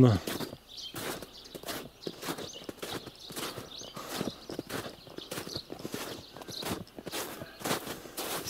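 Footsteps of a person walking on trodden snow, a steady pace of about two steps a second.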